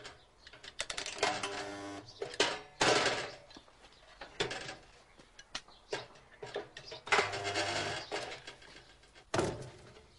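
Portable spot welder making a series of welds on steel pressings. There are several bursts of buzzing, the two longest lasting about a second each, with short clicks between them.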